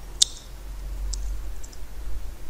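A sharp computer-mouse click just after the start, then a few lighter key clicks from typing on a computer keyboard.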